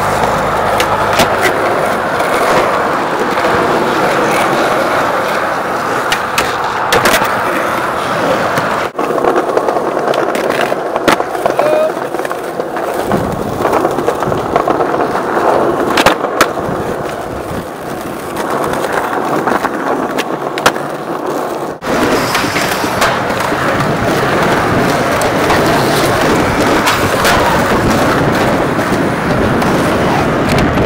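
Skateboard wheels rolling on concrete and asphalt, with sharp clacks of the board popping and landing scattered through. The sound breaks off abruptly twice, about nine seconds in and again near twenty-two seconds, as one clip gives way to the next.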